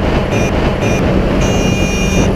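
Motorcycle riding in city traffic: engine and wind noise on the helmet camera. A high tone sounds briefly twice, then holds for under a second near the end.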